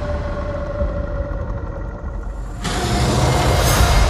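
Film trailer score and sound design: a held, slightly falling tone over a deep rumble, then a sudden loud swell about two and a half seconds in.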